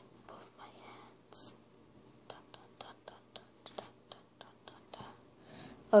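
Light handling noise at a tabletop: a soft whispery rustle about a second in, then a run of short clicks and taps, several a second.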